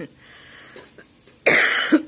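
A young woman gives one harsh cough about one and a half seconds in, lasting about half a second, after a brief laugh at the start.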